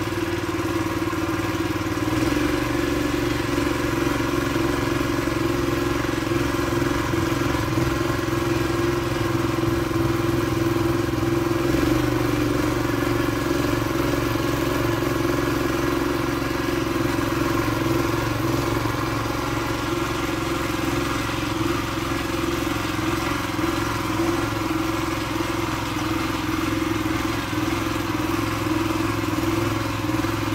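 Small engine of a walk-behind mini power tiller running steadily under load as it ploughs the soil, its note shifting slightly about two seconds in.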